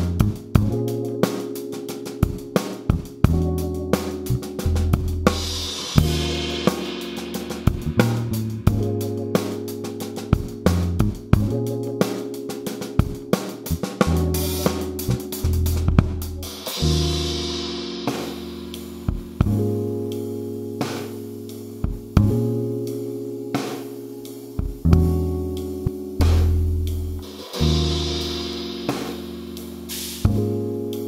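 Acoustic drum kit played in a groove (kick, snare, hi-hat and Murat Diril cymbals) along with a looped sampled backing track of sustained chords and bass. A cymbal crash rings out three times, about every eleven seconds.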